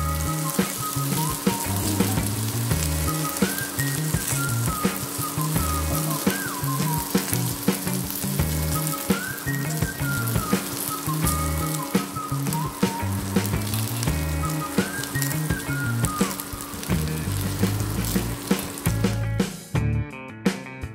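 Cut okra frying in a hot wok, a steady sizzle that stops shortly before the end, heard over background music with a repeating bass line and a gliding melody.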